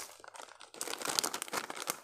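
A crinkly plastic snack packet being handled in the hands, its rustle quiet at first, then turning into a dense run of crackling crinkles about a second in.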